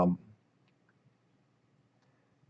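The tail of a spoken word, then near silence broken by a faint click or two of a computer mouse about a second in.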